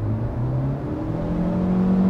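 Proton Iriz Active's engine and CVT under hard acceleration, heard from inside the cabin: the engine note climbs in pitch about a second in and then holds at high revs. This is the CVT being noisy when revs are pulled high, "that loud".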